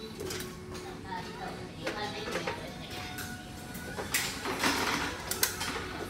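Indistinct voices with sharp knocks and clatter from gym weight machines, growing louder and noisier about four seconds in.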